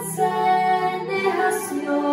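Two teenage girls singing together into handheld microphones, holding long notes that change pitch about every second.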